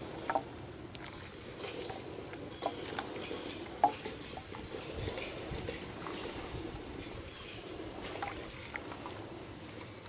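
Insects chirping steadily outdoors in a high, even pulse of about three or four chirps a second. Light scattered clicks of a plastic spatula against a glass measuring cup come through as lye is stirred into water, with one sharper tap about four seconds in.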